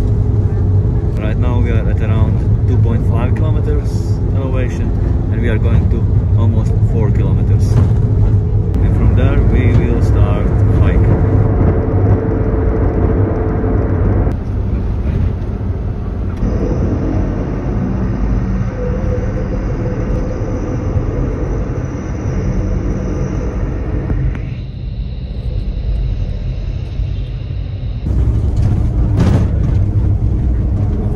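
Steady low rumble of a van's engine and tyres on the road, heard from inside the cabin, with people talking over it for the first ten seconds or so. The rumble shifts abruptly in character a few times.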